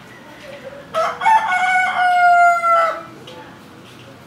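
One loud, long pitched animal call lasting about two seconds, starting about a second in, held at a steady pitch and dropping off sharply at the end.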